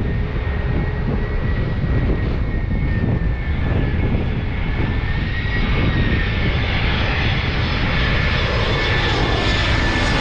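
Airbus A320 jet airliner on final approach with its gear down, passing low overhead. Its engines make a steady rumble with a thin high whine, and the sound grows gradually louder.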